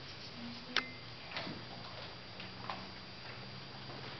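A quiet, hushed room with a few sharp, isolated clicks and taps, the loudest about a second in, over a faint steady hum.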